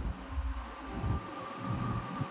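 Uneven low rumble of handling noise on the microphone as a phone is held and moved by hand, with a faint steady high tone behind it.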